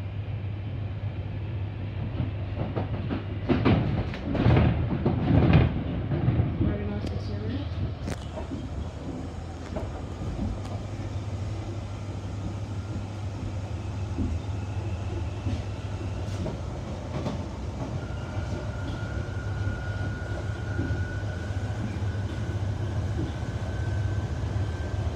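Interior of a London Underground 1995 stock train at a station stop and pulling away, with a steady low hum under everything. A burst of loud knocks and clatter comes from about four to six seconds in, around the doors closing. From about three-quarters of the way through, a thin whine from the traction motors slowly rises in pitch as the train gathers speed.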